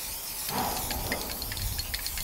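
Aerosol spray-paint can hissing steadily as white paint is sprayed through a stencil onto a steel skip.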